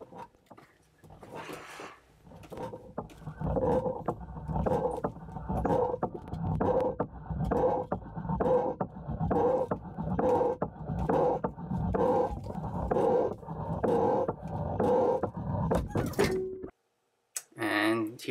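Fishing line being worked over a sharp metal edge underwater, heard through the underwater camera as a rhythmic rasping of about one and a half strokes a second that cuts off abruptly near the end.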